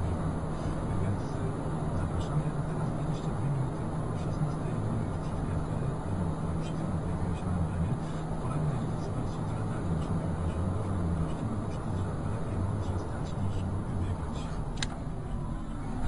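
Steady low drone of a vehicle driving on a road: engine and tyre noise with an even hum.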